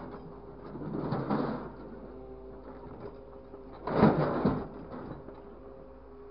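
Grapple truck's engine and crane hydraulics running with a steady whining drone, with two louder, rougher surges of mechanical noise about one second in and about four seconds in as the grapple is moved.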